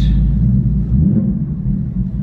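2024 Ford Mustang GT's 5.0 L V8 through a new Corsa cutback exhaust with X-pipe, in its normal active-exhaust mode, heard from inside the cabin while driving: a deep, steady rumble that swells briefly about a second in.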